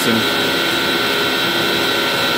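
Large three-phase electric motors driving centrifugal water pumps, running steadily at full speed, with a constant high whine over a loud, even rush.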